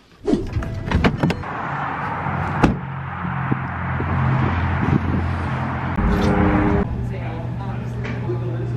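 A car door opening and shutting, with a few sharp clicks and a solid thud near the three-second mark, then steady car running noise with a low hum.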